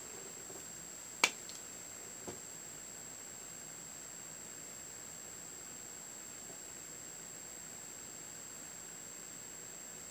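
Quiet room tone with a steady faint high-pitched whine, broken by one sharp click about a second in and a much fainter tick a second later.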